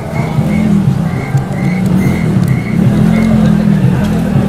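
A motor vehicle running close by, with a short high electronic beep repeating about two and a half times a second.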